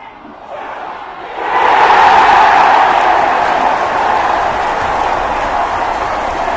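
Stadium crowd cheering, swelling suddenly about a second and a half in and then holding loud and steady.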